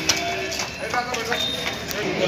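Footsteps of several people in sandals clacking on a hard paved floor, with a few sharp clicks among background voices.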